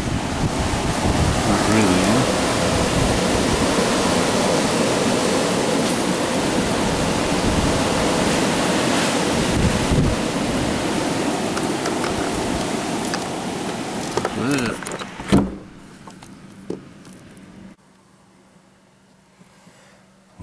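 Strong storm wind, a loud, steady rushing noise with the wind buffeting the microphone. About fifteen seconds in it ends abruptly with a sharp knock, and the sound drops away.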